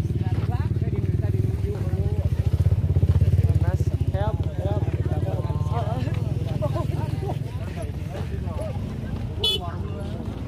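A small engine running with a steady low throb, swelling about three seconds in and easing later, under people talking and calling out. A short high squeak comes near the end.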